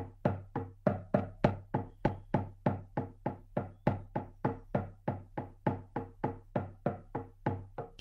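A drum beaten in a steady, even rhythm of about four beats a second: the repetitive drumming that carries a guided shamanic journey.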